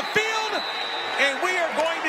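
A man's voice speaking over steady stadium crowd noise.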